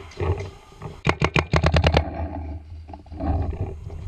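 A rapid burst of about ten shots in one second from a Planet Eclipse Luxe 2.0 OLED electronic paintball marker, about a second in. Rustling and knocking from handling and movement come before and after the burst.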